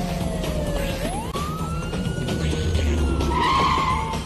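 Police siren wailing: its pitch climbs sharply about a second in, then slowly falls, with a car engine rumbling and a short high screech near the end.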